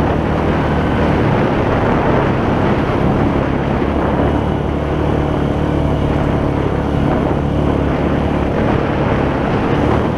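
ATV engine running steadily as the quad drives along a dirt and gravel trail, its low engine note under a constant rushing noise.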